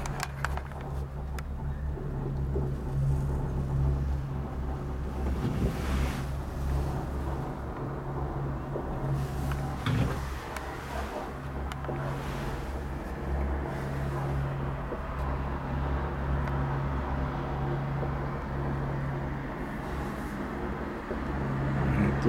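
Steady low hum heard from inside a moving cable car cabin as it travels along its cable, with a few light clicks and knocks from the cabin.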